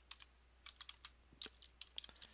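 Computer keyboard being typed on: a quick, uneven run of faint key clicks as a word is entered.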